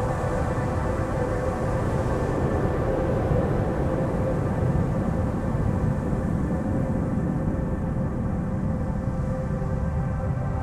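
A sustained ambient drone of many held tones, the strongest a steady tone near 528 Hz, over a continuous low storm rumble with no distinct thunder crack.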